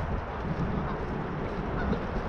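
Bicycle riding along a paved path, with steady wind rumble on the microphone and tyre noise, and a faint honk-like call near the end.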